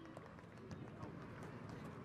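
Faint outdoor sound of a football field: distant voices with a few soft, irregular taps and thuds.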